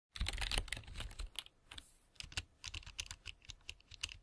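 Typing on a laptop keyboard: quick, irregular keystroke clicks, with a short pause about one and a half seconds in.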